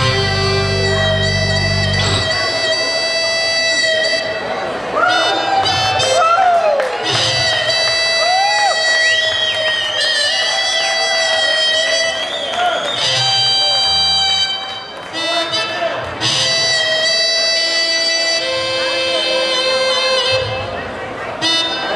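A live rock band playing an instrumental passage: held lead notes with sliding pitch bends over sustained chords. The heavy low bass drops out about two seconds in.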